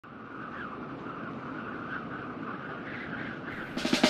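Steady background hiss with a faint wavering hum, then a drum beat starts near the end with a run of sharp, evenly spaced hits, the opening of a music track.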